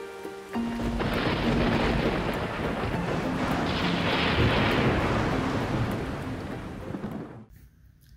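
Thunderstorm sound effect: the hiss of heavy rain with a rumble of thunder. It swells in about half a second in, after a few held musical notes, and fades away shortly before the end.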